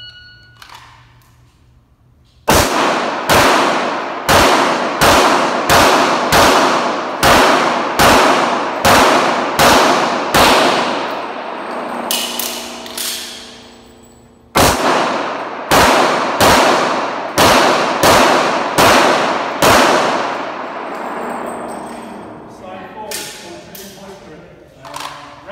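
An electronic shot timer beeps once, then a pistol fires about a dozen shots at roughly one to two a second. After a pause of about four seconds it fires about seven more. Each shot rings out with a long echo off the concrete walls of the indoor range.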